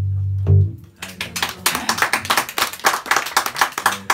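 Acoustic guitar and bass guitar ring out the last chord of a song and cut it off with a final accent about half a second in. Then a small audience breaks into applause.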